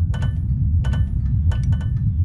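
Produced intro sound effect: a steady deep rumble with three clusters of glassy, chime-like clinks ringing over it.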